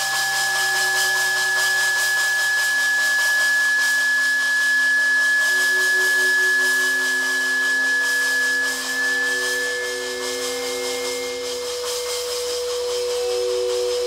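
Free-improvised noise music from a live band: a steady wash of hiss with a single piercing high tone held for the first two-thirds, while slower held notes shift underneath.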